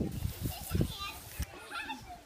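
Children's voices at a distance, chattering and calling out as they play outdoors.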